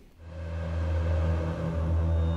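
A low, steady rumbling drone of a dark film score fades in just after the start and holds.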